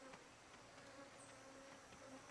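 Near silence: quiet forest ambience with the faint, steady buzz of a flying insect.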